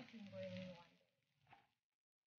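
Near silence: a faint voice trailing off in the first second, a brief soft click, then dead silence as at an edit cut.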